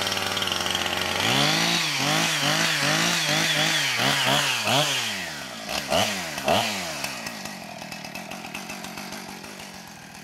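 Two-stroke petrol chainsaw idling, then revved in quick throttle blips, two or three a second, followed by two bigger revs. Its sound then falls away over the last few seconds.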